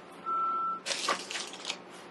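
A short steady beep, one tone lasting about half a second, then rustling and light scratching with small clicks as cotton balls are handled and pushed into a glass jar.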